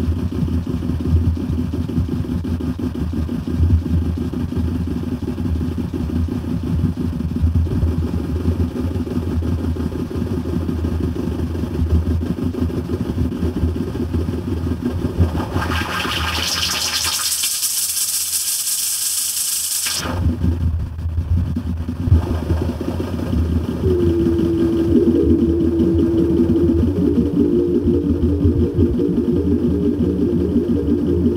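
Abstract electronic techno track: a dense, grainy low rumble with a bright hiss that swells in around the middle while the low end briefly drops out, then a steady held synth tone comes in about three-quarters of the way through.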